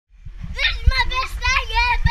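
A child's high-pitched voice calling out in several short, drawn-out shouts, with a low rumble underneath.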